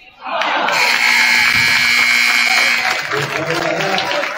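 Gym scoreboard horn sounding as the game clock hits zero, marking the end of the second quarter and the first half. A steady buzz of about two and a half seconds that cuts off, with voices and crowd noise after.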